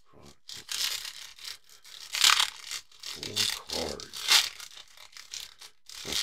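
Foil wrapper of a Panini Chronicles baseball card pack crinkling and tearing as it is pulled open by hand, in a run of irregular rustles with the loudest rips about two and four seconds in.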